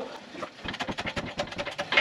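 Lifting chains and the engine hoist rigging rattling in a quick, irregular run of light clicks as the hoisted engine shifts on the chains.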